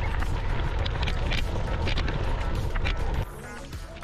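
Riding noise from a bike on a gravel track: a loud low rumble of wind on the microphone and the tyres on gravel, under background music. The riding noise cuts out about three seconds in, leaving the quieter music.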